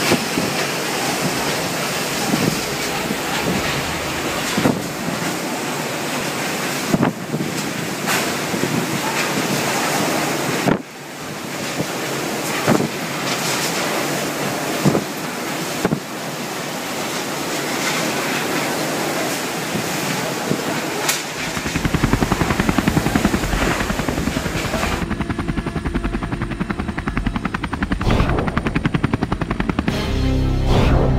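Typhoon Haiyan winds: a loud, constant rush of wind noise buffeting the microphone, with scattered knocks and bangs and an abrupt break about ten seconds in. About twenty seconds in, it gives way to music with a steady beat.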